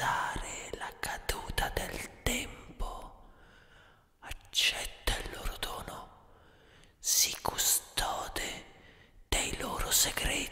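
Whispered voice opening a black metal track: short hoarse whispered phrases come one after another with quiet gaps between them, and no instruments are playing.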